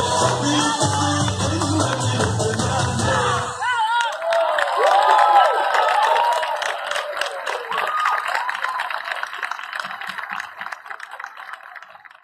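Dabke folk music with a heavy bass beat stops suddenly about four seconds in. The audience then cheers with high whoops and applauds, and the applause fades out near the end.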